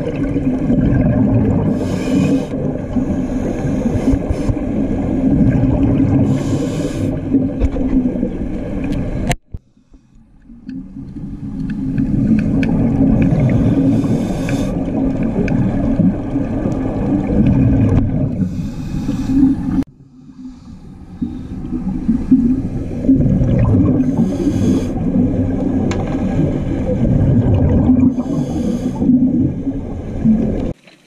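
Underwater sound picked up by a diver's camera: a steady low hum and rumble, with bursts of scuba regulator exhaust bubbles every few seconds. The sound cuts out twice and fades back in over a couple of seconds.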